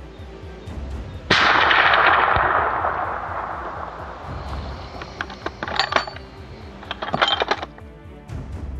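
A single rifle shot about a second in, loud and sudden, with a long echo that fades over two to three seconds, over background music. A cluster of sharp clicks follows near the end.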